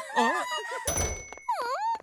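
A cartoon sound effect: a sudden thunk about halfway through, with a bright ringing tone that lasts about half a second, then a short swooping voice-like sound that dips and rises in pitch.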